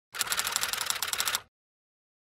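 Typewriter-key sound effect: a fast, even run of clicks lasting about a second and a half, then it stops.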